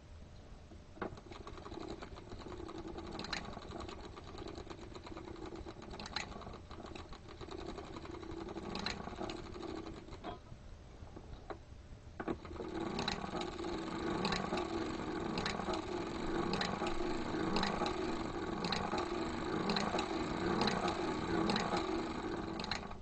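Hand-cranked circular sock machine knitting its first rows: a rhythmic mechanical clatter with a sharper click about once per revolution. The cranking is slow at first, then from about halfway it is faster and louder, with the clicks coming about once a second.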